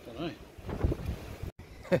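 Wind rumbling on the microphone, with a couple of short murmured vocal sounds from a man.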